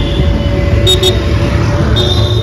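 Loud outdoor road-traffic noise, with two quick, high horn toots close together about a second in.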